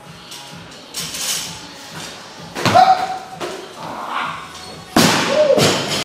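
Loaded barbell with rubber bumper plates dropped onto the lifting platform: two heavy thuds, about two and a half seconds apart.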